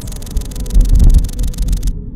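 Deep, pulsing low rumble with a faint steady hum under it, strongest in the middle. A high hiss runs with it and cuts off suddenly just before the end.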